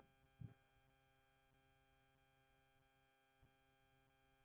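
Near silence with a faint, steady electrical hum. A brief, faint bump comes about half a second in.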